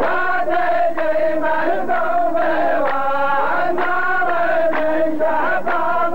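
Rows of men chanting a qalta verse together in unison. A sharp beat comes about twice a second under the chant.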